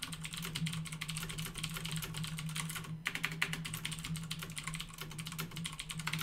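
Fast typing on a computer keyboard, a quick run of key clicks with a brief pause about halfway through, over a steady low hum.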